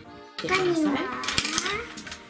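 Stationery clattering on a tabletop as a pencil case is emptied: pens, pencils and plastic rulers knock and click against the table and each other in a quick run of sharp clicks, with background music.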